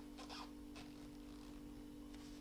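Faint rustling and scratching of yarn being pulled through stitches on a metal Tunisian crochet hook, a few short scratches in the first second, over a steady low hum.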